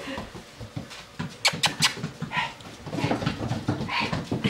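Rottweiler puppies moving about on a tile floor, with small dog sounds and the patter and scrabble of paws. A few sharp clicks come about a second and a half in.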